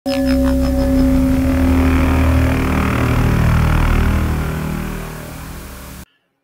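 Intro sound clip: a loud, engine-like rumble blended with music, opening with a few quick falling swoops, fading over the last second and a half and then cutting off.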